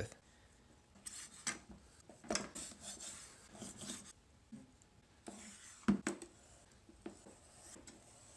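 Large kitchen knife cutting and trimming a block of cured Dragon Skin 30 silicone rubber: faint, irregular scraping slices, with a sharp knock about six seconds in.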